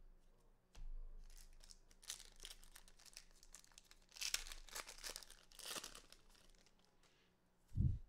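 A foil baseball-card pack wrapper being torn open and crinkled by gloved hands: soft crackling with three louder rustling bursts spread over a few seconds.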